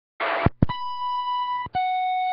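CB radio receiving on channel 40 lower sideband: a short burst of static and two clicks, then a steady beep tone for about a second that steps down to a lower steady tone near the end, sent ahead of a voice transmission.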